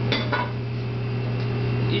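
A metal utensil clinking against a sauté pan of steaming shellfish on the range, two quick clinks near the start, over a steady low hum.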